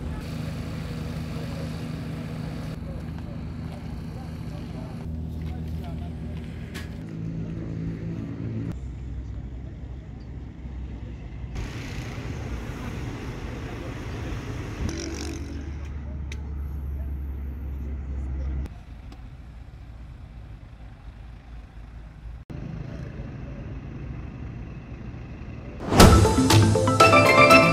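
Outdoor field sound cut from several shots: engines running steadily with a low hum and voices in the background, the sound changing abruptly at each cut. The low hum is heaviest for a few seconds in the second half.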